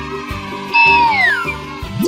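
Cartoon sound effect over children's background music. About a second in, a loud, meow-like pitched cry holds and then slides down in pitch, lasting under a second. A quick rising sweep follows right at the end.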